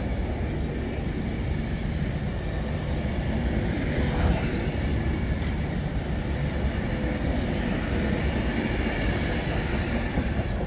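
Avanti West Coast Class 390 Pendolino electric train rolling past along the platform: a steady rumble of wheels and bogies, with a faint steady whine above it.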